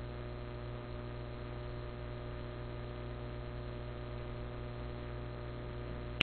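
Steady electrical mains hum with hiss behind it.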